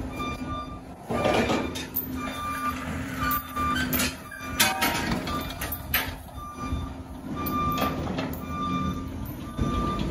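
An engine running with a backup alarm beeping over and over, the sound of machinery reversing, with scattered knocks and clanks.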